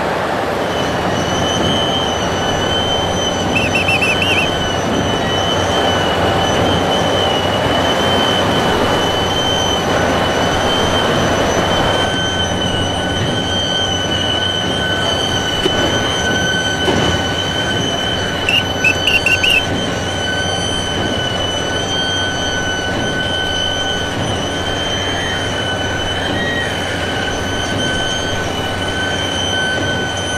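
Heavy hoisting gear straining as a steel oil-drilling derrick is raised: a steady rumble with a constant high metallic squeal, joined about twelve seconds in by a second, lower squeal, and short flutters of higher squeaking twice.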